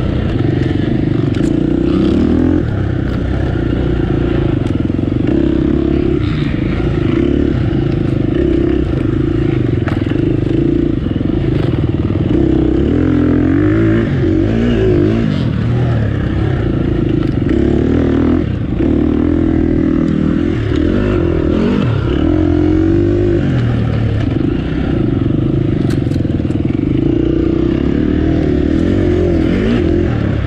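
Off-road racing motorcycle engine running hard under constant throttle changes, its revs rising and falling again and again, with scattered knocks and clatter.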